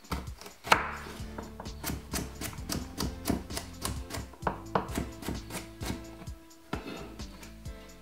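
Chef's knife chopping carrot on a wooden cutting board: a run of sharp knocks, the loudest about a second in, under background music.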